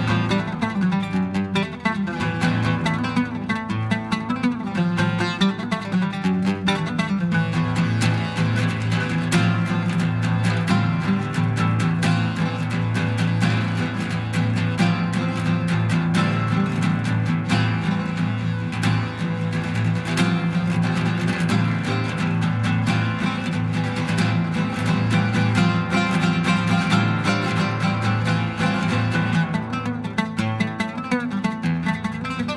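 Solo oud played fast and furious: a dense stream of quickly plucked notes over strong, repeated low bass notes.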